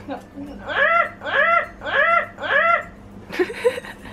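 Dog whining in four short rising-and-falling cries, about two a second, followed by a few sharp clicks near the end.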